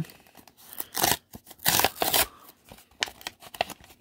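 A paper blind-bag pouch being torn open by hand: two short rips about one and two seconds in, then lighter crinkling and rustling of the packaging.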